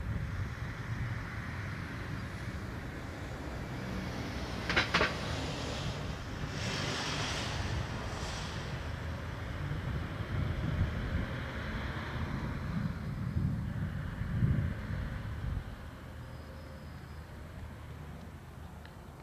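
Wind buffeting an outdoor microphone: an uneven low rumble that rises and falls and eases near the end, with one brief sharp sound about five seconds in.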